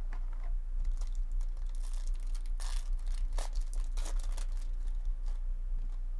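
A baseball card pack's foil wrapper being torn open and crinkled by hand, in several short crackling bursts through the middle, over a steady low hum.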